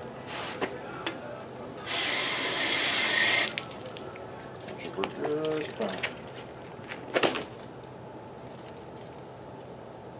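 Water running hard for about a second and a half, rinsing out an aluminium soda can, with a few sharp knocks of the can being handled.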